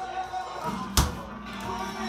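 Music playing steadily, with a single sharp knock about a second in.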